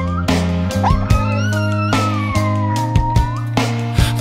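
A chihuahua howling over a rock band backing of drums, bass and electric guitar. A long howl starts about a second in, rising and then sliding slowly down in pitch until about three seconds in; a previous howl ends with a short upturn right at the start.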